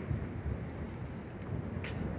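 Low, steady outdoor rumble of wind buffeting a phone microphone over street noise, with a brief hiss near the end.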